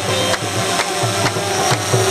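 Drums beating a steady rhythm, about two strong strokes a second with lighter ones between, as part of loud music.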